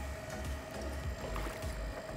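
Low, uneven rumble of an idling boat at sea, with a faint steady whine of the electric deep-drop reel winding a fish up from depth.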